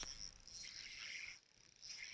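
Abu Garcia Revo SX spinning reel faintly ticking and whirring as a hooked smallmouth bass is reeled in on a bent rod, dropping almost to silence about a second and a half in.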